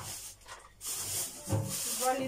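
Plastic bag rustling as it is handled, in two bursts: about a second in and again near the end.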